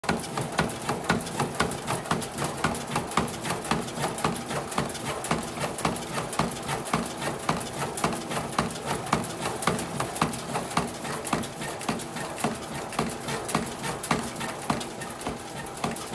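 A 2025 Rawlings Icon composite baseball bat being rolled by hand between the rollers of a bat-rolling machine to break it in, giving a steady run of rapid clicks and creaks, several a second.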